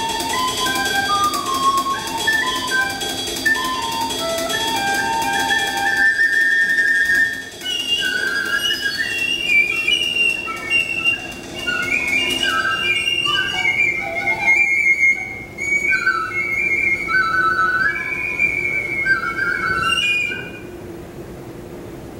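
Flute improvising a free-jazz line of short, separate notes that climbs higher in pitch as it goes, with light drum-kit percussion underneath. The flute stops near the end.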